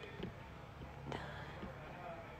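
Quiet room tone with a faint low hum, broken by two faint clicks, about a quarter second in and just after a second in.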